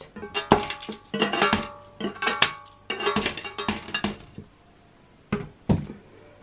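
Coins dropped one after another through the slot of a savings tub, clinking and ringing against the coins already inside for about four seconds. Two knocks follow near the end.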